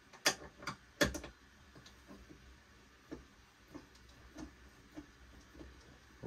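Small clicks and ticks of hardware being handled as a through bolt and knob are threaded into a portable bow vise clamped to a bow limb: two sharper clicks in the first second, then light, scattered ticks.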